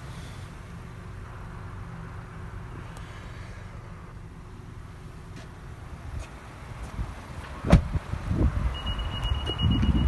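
A vehicle door shuts with a sharp thud about three-quarters of the way in. Near the end the Honda Ridgeline sounds a steady high-pitched warning beep. A low steady rumble runs underneath.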